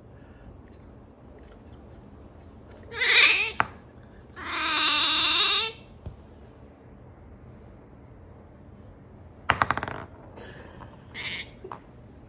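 A drowsy, nearly asleep pet otter gives a short breathy burst about three seconds in. It follows with one long squeaky call of about a second and a half whose pitch wavers. Near the end comes a quick run of clicks and a few short squeaks.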